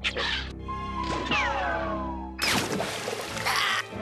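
Cartoon soundtrack music with comic sound effects: a short noisy burst at the start, several tones sliding downward in the middle, then a longer, louder noisy burst in the second half.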